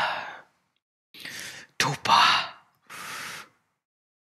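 A man weeping: long, breathy sighs and gasping breaths, with a choked sob that drops in pitch about two seconds in.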